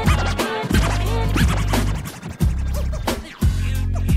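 DJ turntable scratching over a hip hop beat with deep bass, the bass dropping out briefly a few times.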